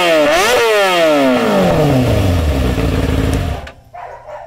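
Crash-damaged 2013 Kawasaki ZX-6R's inline-four engine revved by hand: two quick throttle blips about half a second apart, then the revs fall slowly back toward idle. The engine sound drops away abruptly near the end.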